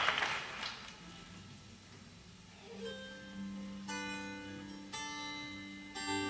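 Applause dying away, then a solo acoustic guitar starts a slow introduction about halfway through: a few low notes, then chords struck about a second apart, each left to ring.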